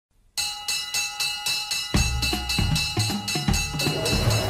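Opening of a cartoon theme song: a bright, bell-like figure struck about four times a second, with bass and drums coming in about halfway through.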